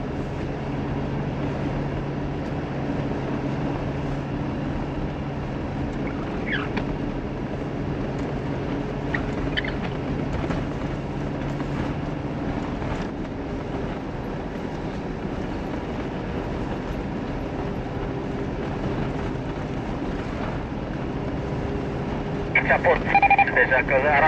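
Engine hum and tyre noise heard inside the cabin of a Mitsubishi Pajero Sport driving on a snow-covered track, with the engine note shifting about halfway through. Near the end, loud beeping tones break in.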